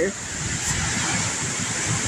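Strong wind rushing through trees and blowing across the microphone: a steady, even rushing noise.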